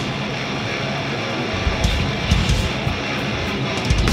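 Hardcore band playing live: distorted electric guitar riffing, with drums and cymbal hits coming in about a second and a half in.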